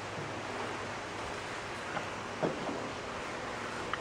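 Steady, even outdoor background hiss with no voices, broken by a faint short tap about two and a half seconds in.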